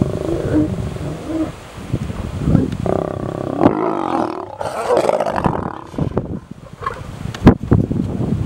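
A mating pair of lions snarling and growling as copulation ends, with the male and the lioness both snarling open-mouthed. The loudest growling comes in the middle, and a few sharp clicks or cracks follow near the end.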